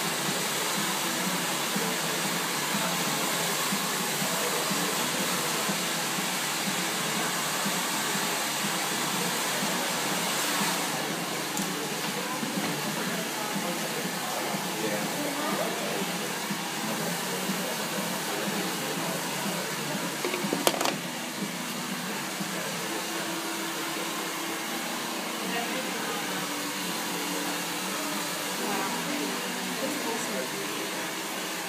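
Hand-held hair dryer running steadily, a constant rushing hiss of air that eases slightly about a third of the way through. One sharp click about two-thirds in.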